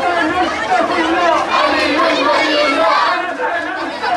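Crowd chatter: many children's and young men's voices talking and calling out at once, overlapping.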